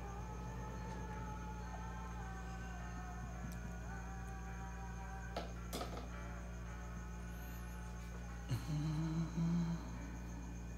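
A man hums a few short, low notes near the end, over a steady electrical hum and faint background music. Two light clicks come about halfway through.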